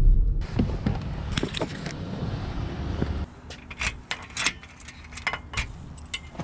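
Car running, heard from inside the cabin, then after about three seconds keys jangling and clicking against a door lock.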